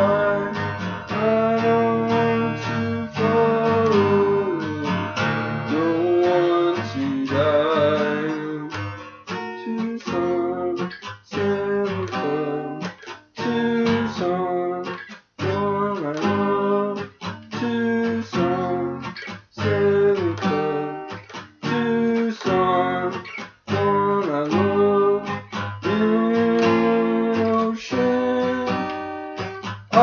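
Acoustic guitar strummed in a steady rhythm, chords ringing on between strokes.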